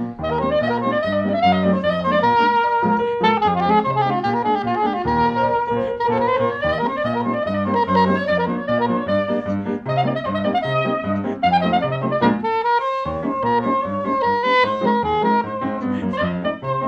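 Soprano saxophone playing an instrumental solo with sliding notes, over piano accompaniment.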